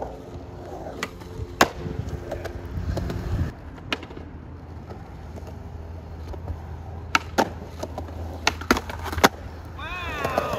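Skateboard wheels rolling on smooth concrete with a steady low rumble, broken by sharp clacks of the board's tail and wheels hitting the ground. The clacks are scattered, with a quick run of them in the last three seconds.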